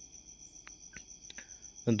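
A faint, steady high-pitched tone, with a few soft clicks, during a pause between words; a man's voice starts again right at the end.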